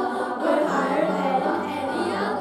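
A group of schoolchildren singing together into handheld microphones, amplified over a stage sound system.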